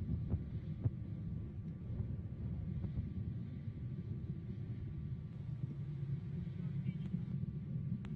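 Steady low rumble with faint crackle from the Soyuz rocket's first stage, its four strap-on boosters and core engine burning in ascent, heard from far below.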